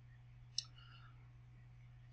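Near silence with a low, steady hum, broken once by a single brief click just over half a second in.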